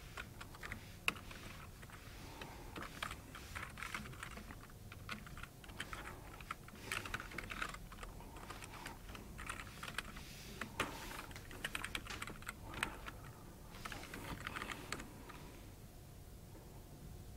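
Computer keyboard being typed on, faintly: irregular clusters of keystrokes with short pauses between runs.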